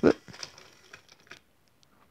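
A few light plastic clicks and taps in the first second and a half as the bare chassis of a Trackmaster toy engine is set down on plastic toy track.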